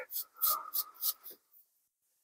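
Faint, brief scratching and crackling of moss being picked off the small trunks of a bonsai forest planting by hand, with a short murmur in the first second; it falls to near silence in the last half second.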